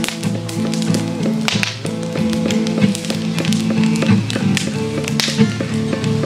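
Acoustic guitar strumming chords between sung lines, with many sharp percussive taps and slaps in the rhythm.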